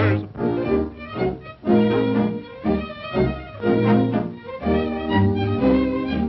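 Instrumental orchestral cartoon score, violins carrying a melody of short held notes over a bass line.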